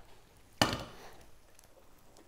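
A stainless steel colander of drained pasta set down on a metal pot: one sharp knock about half a second in, fading quickly.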